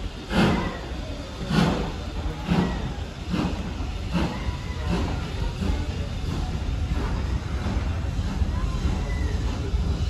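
Steam locomotive exhaust beats as the train pulls away from the station, heard from a carriage: strong beats about a second apart that come quicker and fade over the first several seconds as the train gathers speed. Underneath is a steady low rumble of the moving carriage that builds toward the end.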